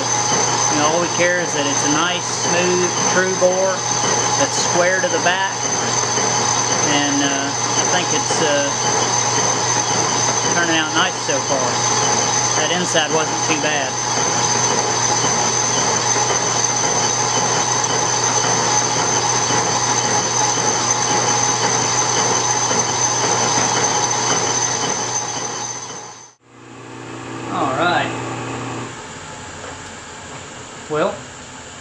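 Metal lathe boring a cast iron part with a homemade boring bar tipped with carbide from a broken end mill, the machine running steadily with a constant high whine. The sound cuts off abruptly about four seconds before the end, leaving a quieter hum.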